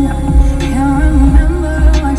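Music with a deep, recurring bass beat and a melody line, played loud through the Land Rover Defender 90's upgraded car audio system.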